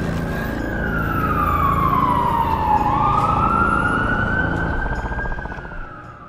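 An emergency-vehicle siren wailing. Its pitch slides down for about three seconds, swings back up, then sinks slowly as it fades away near the end, over a low steady drone.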